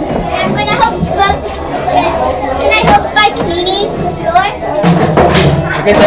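Children talking and playing, with music in the background.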